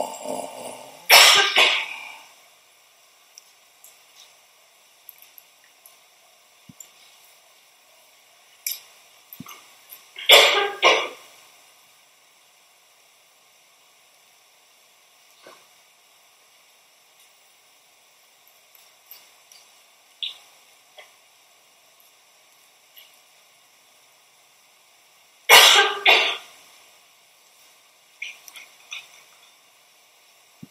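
Three short bouts of coughing, about 1 s in, about 10 s in and about 25 s in. Faint scattered ticks and rustles fall in the quiet between them.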